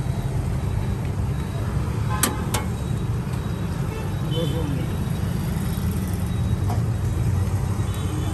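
Steady low rumble of road traffic, with two sharp clicks about a third of a second apart a little over two seconds in.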